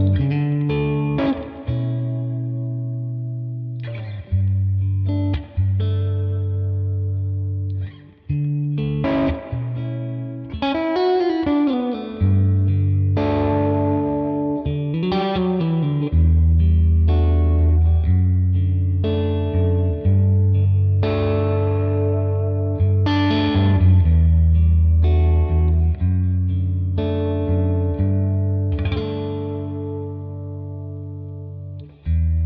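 Electric Stratocaster played through a Tone King Imperial MKII tweed amp model set at the edge of breakup, a clean tone with a little grit. It plays blues chords and licks, with bent notes rising and falling about ten and fifteen seconds in.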